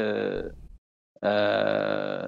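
An elderly man's voice: a word trails off, there is a short pause, then one long drawn-out hesitation sound at a steady pitch.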